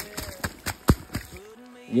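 A few short, sharp knocks and scuffs: footsteps on wet, muddy ground and handling of the phone as he walks. A man's voice starts again at the end.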